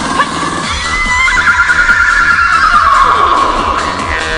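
A woman's vocal mimicry of a horse's whinny: one long wavering call that starts about a second in and falls steadily in pitch, over music with a steady low beat.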